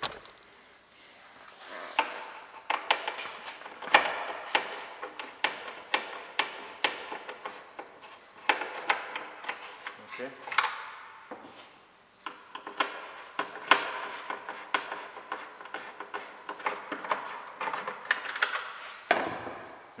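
A hand screwdriver backing out the cross-head screws that hold a car tail light, with irregular clicks and scrapes of the tool against the screws and plastic trim, and a brief lull about halfway through.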